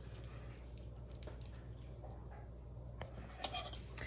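A low steady hum with a few faint clicks. Near the end comes a short cluster of light clinks of a spoon against a dish as sour cream is about to be scooped.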